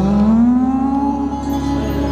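Male Hindustani classical voice sustaining a long sung note that slides up smoothly in the first second and then holds steady, over a steady low drone.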